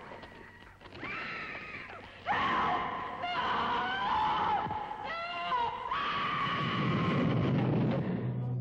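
A woman screaming: several long, high screams in a row, some bending up or down in pitch, with a low rumble swelling beneath them near the end.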